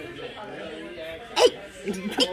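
Speech only: low background talk in a room, then one short loud shout of "Hey!" about one and a half seconds in.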